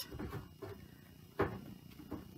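A plastic water bottle set down on a table: one light knock about one and a half seconds in, with faint handling noise before it.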